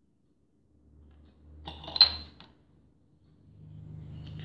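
A small metal piping tip being picked up and handled: a brief clatter of small metallic clinks about two seconds in, peaking in one sharp click.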